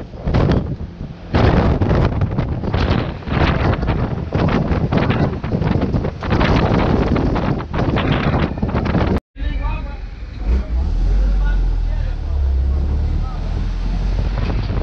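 Wind buffeting the microphone of a camera riding in an open-sided truck, gusting hard and unevenly. It cuts off suddenly just past nine seconds, and a steadier low rumble of the moving vehicle follows.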